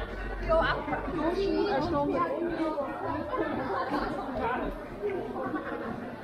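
Chatter of several passersby, with overlapping voices in conversation as people walk by.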